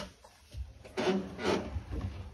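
Handling noise on a phone's microphone: a click, then rubbing and scraping as the phone is fumbled and covered.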